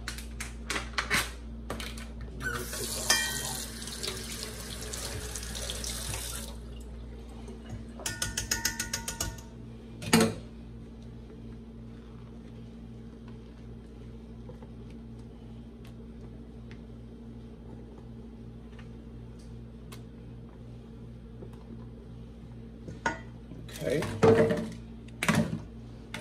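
Kitchen tap running for about four seconds, then a quick run of clicks and a single knock. After that comes a quieter stretch over a steady low hum.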